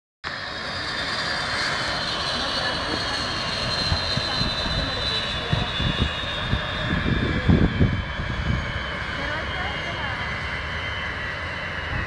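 Kamov Ka-32 coaxial helicopter shutting down: the high whine of its twin turboshaft engines falls slowly and steadily in pitch as they spool down, over the running noise of the still-turning rotors. A few louder low thumps come between about five and eight seconds in.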